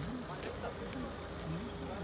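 Several voices talking indistinctly over a steady low engine rumble, with a thin steady hum coming in about halfway through.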